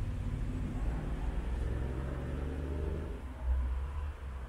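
Low rumble of a passing motor vehicle with faint engine tones. It holds steady, swells briefly near the end, then fades.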